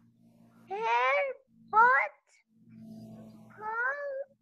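A young girl's high-pitched voice slowly sounding out single words while reading aloud over a video call. There are three drawn-out syllables, each rising in pitch.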